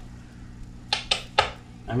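A small metal socket clicking against the nut of a guitar's control pot as it is worked on: three sharp clicks in quick succession around the middle, over a low steady hum. The socket, about 11 mm, is not a snug fit on the nut.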